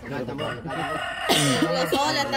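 Domestic fowl calling: a loud call breaks in suddenly about two-thirds of the way in.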